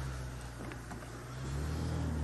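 Engine of an open game-drive vehicle running at low speed, a steady low hum that picks up slightly in pitch and level about halfway through.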